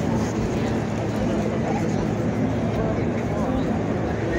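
Steady rumble of city street traffic, with indistinct voices in the background.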